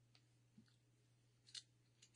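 Near silence: room tone with a faint low hum and a few faint brief clicks or rustles, the clearest about one and a half seconds in.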